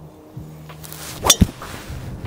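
Driver striking a golf ball off the tee: one sharp crack about a second and a quarter in.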